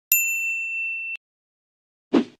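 A single bell-like ding sound effect: one clear tone with faint higher overtones, held about a second and then cut off abruptly.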